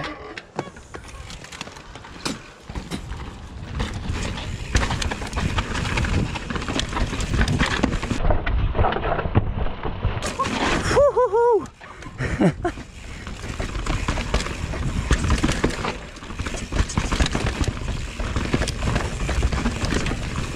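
Mountain bike descending a rough dirt-and-rock trail: tyres rolling and skidding over the ground, the frame and chain rattling over roots and rocks, with rushing air on the helmet microphone, building up from about two seconds in. A brief wavering pitched sound cuts through about eleven seconds in.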